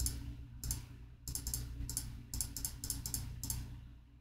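Computer keyboard keys clicking in quick clusters of keystrokes as numbers are entered into a calculator. A faint, steady low hum lies beneath.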